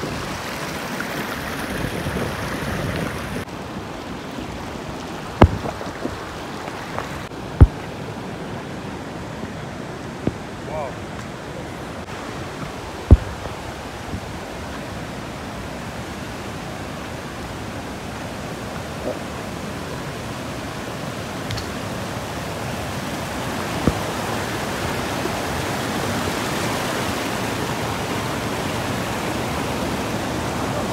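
Steady rushing of shallow white-water rapids on the Athi River, with a few sharp knocks scattered through that are louder than the water.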